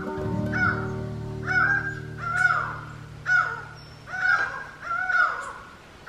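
A bird calling loudly over and over, each harsh call rising and then falling in pitch, about once a second. Background music with long held notes fades out under the calls in the first half.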